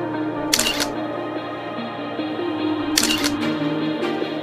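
Background music with a camera shutter clicking in two short bursts, about half a second in and about three seconds in.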